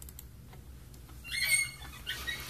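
Quiet room tone, with one short, high squeak about a second and a half in.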